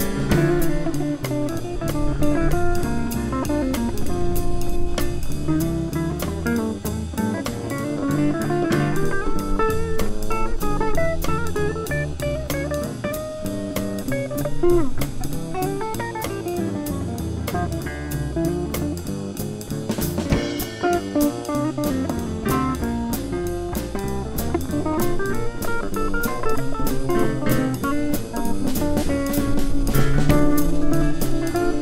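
Small jazz combo playing live: electric guitar carrying the lead line over upright bass and drum kit with steady cymbal strokes.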